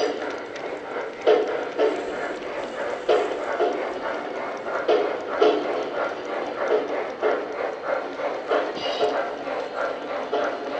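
MTH O-gauge C&O Allegheny 4-6-6-6 model steam locomotive's sound system chuffing in a steady rhythm as it pulls its train, over the rumble of wheels on the track.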